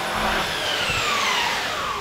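Corded electric power tool held against a plastered wall, running with a loud, even noise and a faint tone that slowly falls in pitch.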